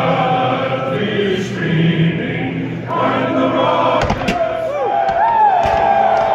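Singing fills a packed stadium, crowd voices joining in, typical of the pregame national anthem. About four seconds in, sharp pyrotechnic bangs go off and shouts and cheers rise over the singing.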